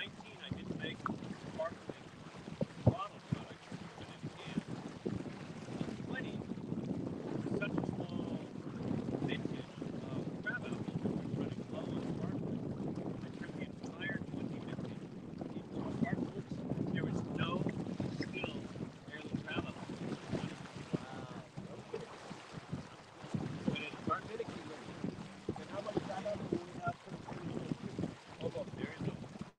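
Wind buffeting the microphone aboard a small sailboat under way: a steady low rumble, with water moving along the hull and muffled, indistinct talk underneath.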